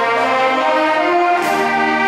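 A live instrumental ensemble with brass, led by a conductor, playing sustained chords in a reverberant church. The harmony changes about a second and a half in.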